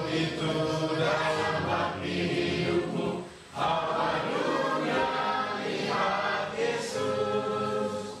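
A group of voices singing a hymn together in sustained phrases, with a brief pause about three seconds in, fading out at the end.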